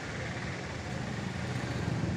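An engine running in the background with a steady low hum that grows slightly louder.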